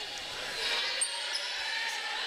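Crowd noise filling a volleyball gym during a rally, with a single sharp hit of the ball about a second in.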